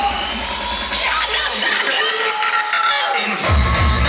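Hardstyle dance music played loud over a hall sound system. The bass kick drops out about one and a half seconds in, leaving a break of higher sounds, then comes back in hard near the end as the drop hits.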